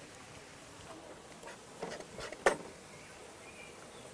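A few soft scrapes and taps from oil-painting tools working thick paint on the palette and canvas, the loudest a short sharp tap about two and a half seconds in.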